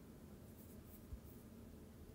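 Near silence: faint room tone, with one soft low bump about a second in.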